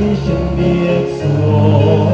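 A choir singing a hymn over sustained low accompaniment, the notes held and changing about once a second: the recessional hymn at the close of the Mass.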